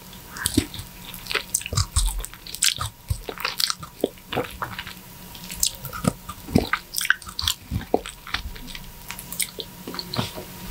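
Close-miked eating of juicy ripe mango flesh: biting and chewing the soft pulp, a steady irregular string of wet smacks and squishes.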